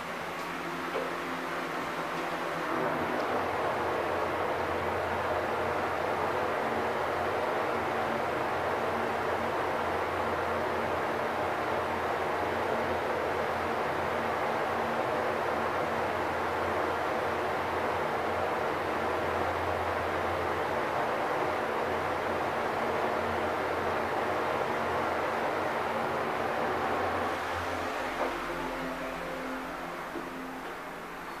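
Mitsubishi traction elevator car travelling down: a click about a second in, then from about three seconds in a steady rushing ride noise with a low hum, easing off as the car slows and stops near the end, with a short click.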